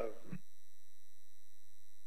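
A steady electronic tone with several constant pitches over a low hum, unchanging throughout, after a short spoken "Oh" at the very start.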